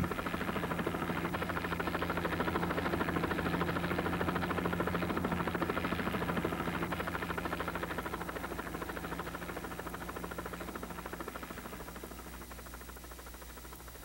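Helicopter flying overhead, its rotor beating in a rapid steady pulse. It is loudest a few seconds in, then fades gradually as it moves off into the distance.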